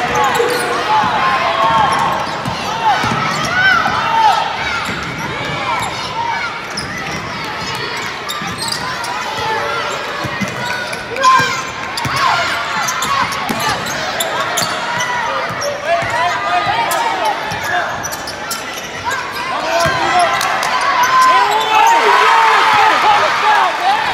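Live basketball game in a gym: sneakers squeaking on the hardwood court in many short chirps, a basketball being dribbled, and a constant background of crowd voices and shouts echoing in the hall.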